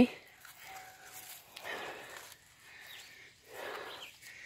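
Faint, irregular rustling and scraping of hands pulling celery stalks up through foam pool-noodle floats, in a few short bouts.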